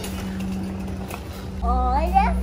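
Small plastic wheels of a toy doll stroller rolling over a tiled floor, a steady low rumble. A child's voice starts near the end.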